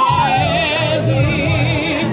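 A man singing into a handheld microphone, drawing out long notes with a wide, wavering vibrato over music with a pulsing low beat.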